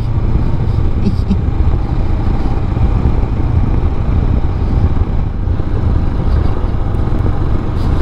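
Royal Enfield Himalayan's single-cylinder engine running steadily while the motorcycle cruises along, heard with the rush of riding on the bike's onboard microphone.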